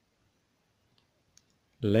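A few faint ticks and taps of a ballpoint pen writing on workbook paper, then a man's voice says a word near the end, louder than the pen.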